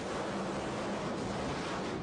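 Two Top Fuel dragsters' supercharged nitromethane V8 engines at full throttle as they launch off the starting line, heard as a dense, steady noise. Both cars are spinning and smoking their tires at the hit of the throttle.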